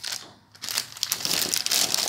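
Clear plastic packaging bag crinkling as it is handled, starting about half a second in.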